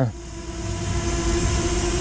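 Hubsan Zino Mini Pro quadcopter hovering in place, its propellers giving a steady, even hum over a faint hiss and a low rumble.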